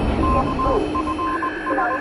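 Electronic intro sound effect like a radio signal: a high tone pulsing in short, regular beeps over a steady lower tone, with a second steady tone joining about halfway through.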